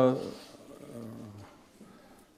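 A man's voice trailing off at the end of a word, then a short, quieter, low voiced hum of hesitation from about half a second to a second and a half in, followed by a pause.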